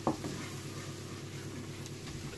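A wooden spoon stirring softened red onion and garlic coated in plain flour in a non-stick frying pan, with a quiet, steady sizzle: the flour is being cooked in to thicken a gravy.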